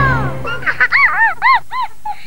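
A quick run of about five short honk-like calls, each rising then falling in pitch, coming after the tail of a falling musical phrase.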